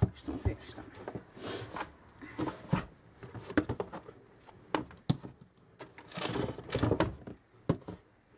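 Plastic cosmetic bottles and containers being handled in a cardboard box and set down on a table: a series of irregular knocks and clunks, with rustling of the packed box contents between them.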